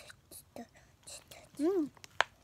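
Children chewing gummy candy, with soft mouth clicks and smacks, and one short hummed voice sound that rises then falls in pitch near the end.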